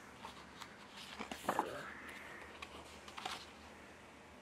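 Pages of a large hardcover book being turned by hand: a run of paper crackles and flaps with a brief swish, loudest about a second and a half in, and another flip near the end.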